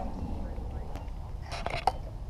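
A steady low rumble with faint distant voices, broken by a few light, sharp knocks about a second in and again near the end.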